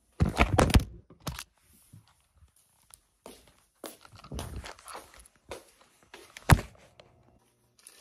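Handling noises of objects being moved and set down: a quick cluster of knocks and thuds in the first second, softer knocks and rustling around the middle, and one sharp knock about six and a half seconds in.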